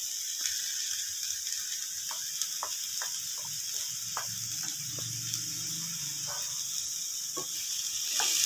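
Food sizzling steadily in a hot frying pan, with a string of short clicks and scrapes from a wooden spatula against the pan and a glass bowl as chopped vegetables are pushed in.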